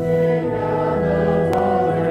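Congregation singing a hymn to organ accompaniment, a new phrase starting right after a brief breath between lines. A single short click sounds about one and a half seconds in.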